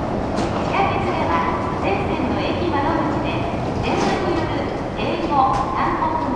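Steady rumble of a subway train at a station platform, with people's voices over it.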